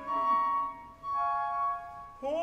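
Orchestral flutes and woodwinds playing two short phrases of steady held notes while the tenor is silent.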